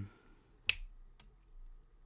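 A single sharp finger snap about two-thirds of a second in, followed by a much fainter click about half a second later.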